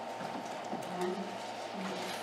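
A faint voice says "yeah" over steady room hiss, with a few light clicks.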